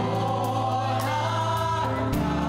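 Small gospel choir singing into microphones with keyboard accompaniment, holding one long chord over a steady bass note.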